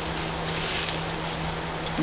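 Skirt steak sizzling on a hot gas-grill grate. The hiss swells briefly about half a second in as the steak is turned with tongs.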